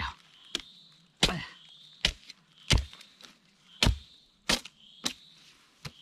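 A hoe chopping the tough, woody root end off a freshly dug spring bamboo shoot: about eight sharp, uneven chops, roughly one a second.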